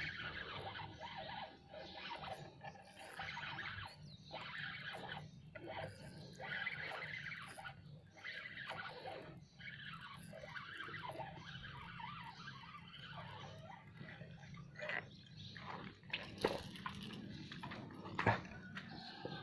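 Spinning reel being cranked to retrieve a lure, a whirring of the reel's gears and rotor that stops and starts in short pauses. A few sharper knocks come near the end.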